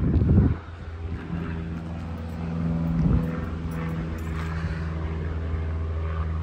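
A vehicle engine idling steadily as a low, even drone, with a short loud rumble in the first half-second.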